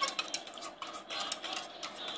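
A utensil stirring water in a plastic cup, clicking and scraping against the cup in quick, irregular ticks as table salt is dissolved to make saline.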